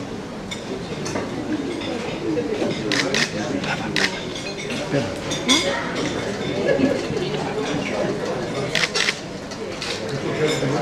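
Low chatter of a roomful of people with a few sharp clinks of tableware, around three to four seconds in, again about five and a half seconds in, and near nine seconds.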